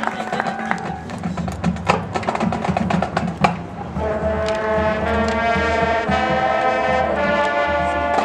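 Marching band playing a field show: low held tones under a few sharp percussion hits, then the brass section comes in about halfway with sustained chords.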